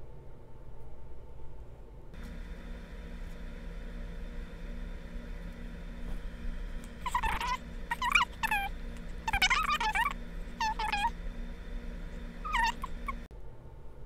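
Several short, high calls that fall in pitch, in three clusters through the second half, from an animal. They sit over a steady hum that starts about two seconds in and cuts off shortly before the end.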